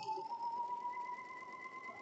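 Electric sewing machine running at a steady speed, stitching through fabric and foundation paper: a faint, even motor whine.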